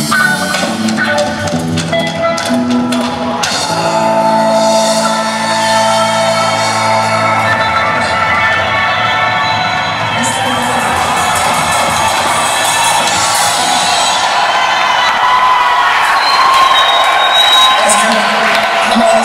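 A live band's music winding down on a long held chord, then the audience cheering and whooping.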